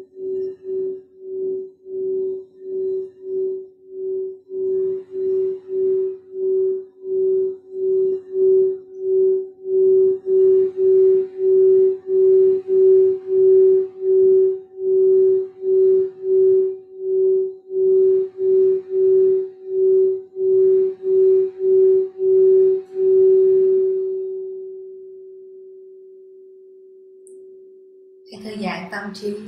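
A large hand-held singing bowl rubbed around its rim with a mallet: a steady low hum that pulses nearly twice a second and builds in loudness through the first half. Near the end the pulsing stops as the mallet comes off, and the tone rings on and fades away.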